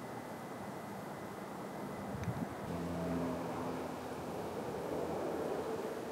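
Distant road traffic: a steady hum, with a low engine note swelling a little after about two and a half seconds, and a faint click about two seconds in.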